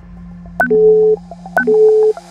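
Workout interval timer counting down: two short electronic beeps about a second apart, each starting with a click, over faint background music.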